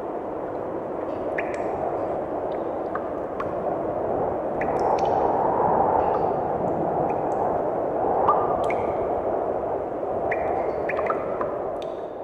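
A recorded ambience fading in as an intro between songs: a steady rushing noise with scattered small drip-like clicks and pings.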